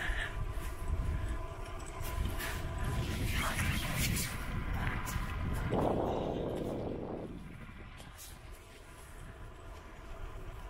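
Wind rumbling on the microphone of a camera carried on a moving bicycle, with tyre noise on asphalt, and a brief louder rushing noise about six seconds in before it eases off near the end.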